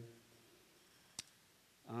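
A pause in a man's speech at a microphone: faint room tone with one sharp click a little over a second in, then his voice starting again just before the end.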